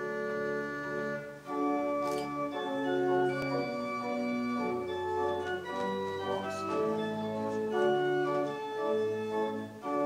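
Organ playing slow, held chords that change about once a second: music for a wedding processional.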